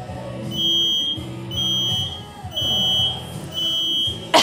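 Gym countdown timer beeping four times, about a second apart, counting down to the start of a timed workout, over background music.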